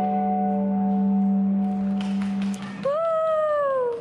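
Violin and guitar duo busking: a long low held note with other sustained notes above it, then, near the end, a single note that slides down in pitch for about a second as the phrase closes.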